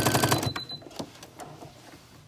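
Electric sewing machine stitching a bias-tape tie onto a cloth face mask: a rapid, even run of needle strokes that stops abruptly about half a second in, followed by a few faint clicks.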